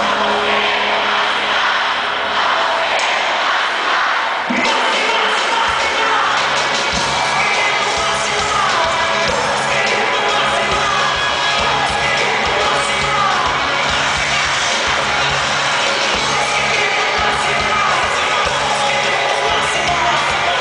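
A live rock band playing loudly, heard from among the audience, with the crowd cheering and shouting over it. A steady drum beat comes in about four and a half seconds in.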